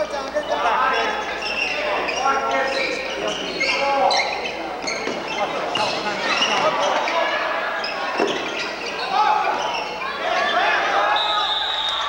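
Basketball game sound in a gym: a basketball bouncing on the hardwood court amid many overlapping voices of players and spectators calling out, with echo from the hall.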